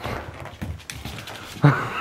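A puppy making small excited whimpering noises as it plays wildly, over rustling and scuffling. A man bursts out laughing near the end.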